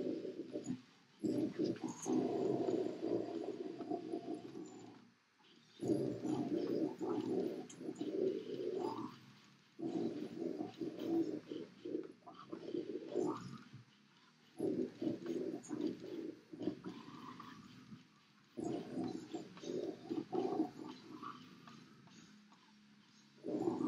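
Deep, guttural death-metal growl vocals, delivered in rough phrases of a few seconds each with short breaks between them.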